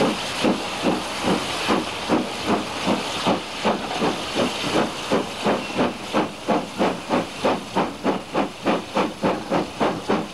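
Steam locomotive working hard, heard from the train: a steady, even rhythm of exhaust beats over continuous steam hiss. The beats quicken gradually from about two and a half to about three a second as the train gathers speed.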